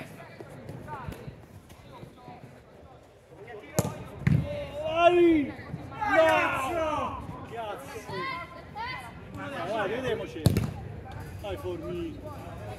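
Two sharp thuds of a football being kicked, about four seconds in and again near the end, amid loud shouts and calls from the players.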